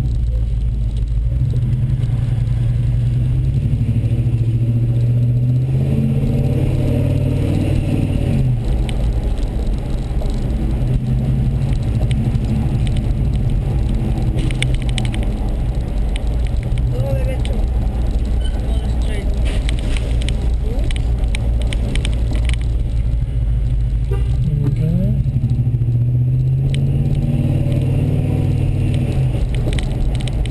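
Car engine and road noise heard from inside the cabin. The engine note rises as the car accelerates a few seconds in, and again near the end.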